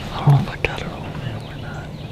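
A man whispering, with a short louder voiced sound about a quarter second in and a sharp click just after.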